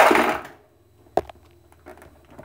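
A loud, short rush of handling or rummaging noise, then a single sharp click about a second in, with a few faint clicks near the end.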